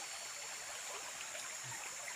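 Steady background ambience of a tropical forest: an even rushing hiss like running water, with faint high tones held steady above it.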